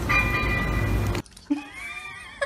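Cat sounds: a low rumbling noise with a steady high-pitched cry that cuts off suddenly about a second in, then a short low note and a wavering, gliding meow.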